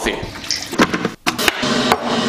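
Kitchen sounds while coffee is being made: a few short knocks of crockery being handled, then, from about halfway through, a steady rush of running water.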